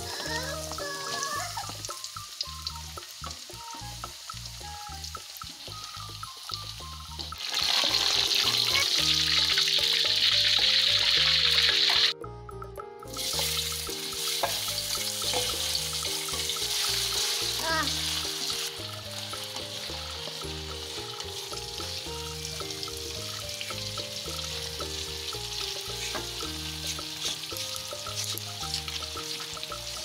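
Oil sizzling in a wok under background music with a steady beat. A loud sizzle about a quarter of the way in lasts some four seconds and cuts off suddenly. Sizzling starts again as sliced shallots are scraped into the hot oil with a wooden spatula.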